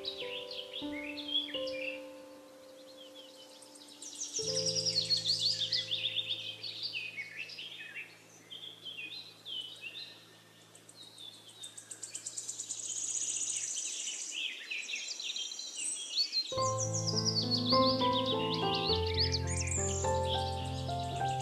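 Slow, soft solo piano playing sustained chords over continuous forest birdsong, many birds chirping at once. The piano falls away for a couple of seconds past the middle while the birds carry on, then returns fuller near the end.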